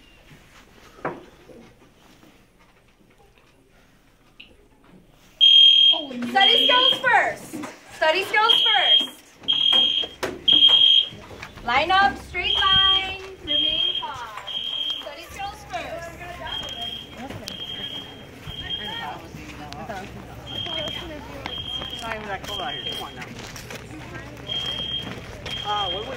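School fire alarm going off for a fire drill, about five seconds in: a high, loud beep repeating roughly once a second, the signal to evacuate the building.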